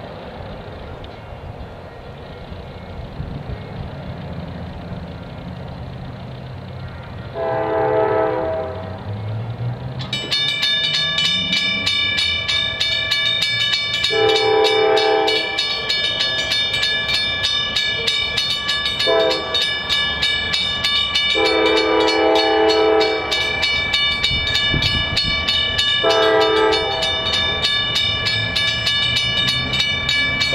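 Norfolk Southern C40-9W diesel locomotive's air horn sounding the grade-crossing signal as the train approaches: long, long, short, long, then starting again. From about ten seconds in, a crossing signal bell rings steadily under the horn.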